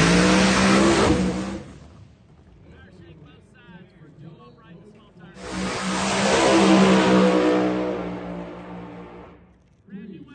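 Pro Mod drag race car at full throttle, pulling away down the strip and fading out within about two seconds. After a stretch of faint voices, a second drag car's full-throttle run cuts in abruptly about five seconds in, grows loud, and fades away before the end.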